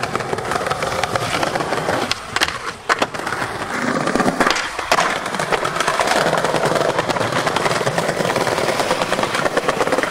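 Skateboard wheels rolling over paving, with several sharp clacks of the board's tail popping and landing around the middle.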